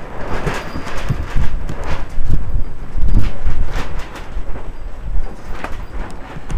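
Wind buffeting the microphone in gusts, a loud low rumble, with irregular sharp clicks and rattles throughout.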